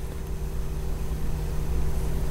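Steady low background hum with a faint rumble underneath, and no distinct events.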